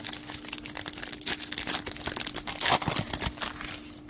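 Foil wrapper of a trading-card pack being torn open and crinkled by hand: a dense, irregular run of sharp crackles.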